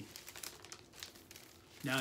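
Faint rustling and crinkling of a laserdisc's jacket and sleeve being handled, with a few small ticks.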